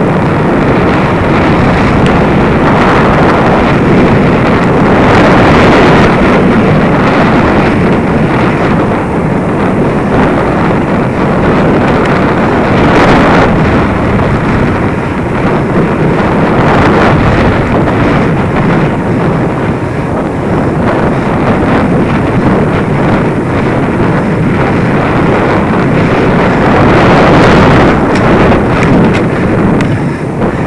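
Steady wind rushing over the microphone of a bicycle-mounted action camera while riding, with tyre and road rumble underneath. A few soft knocks come through from bumps in the path.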